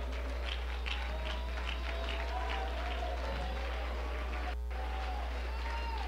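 Soft sustained church music with the congregation clapping along in a steady rhythm, over a constant low electrical hum.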